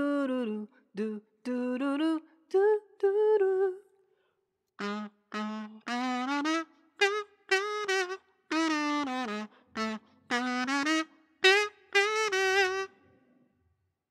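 Aluminium kazoo hummed in short tongued 'doo-doo' notes, playing a tune that steps between higher and lower notes with small slides in pitch. There is a pause of about a second around four seconds in.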